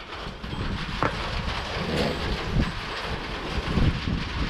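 Wind buffeting the camera microphone: a low, uneven rumble with a couple of faint ticks.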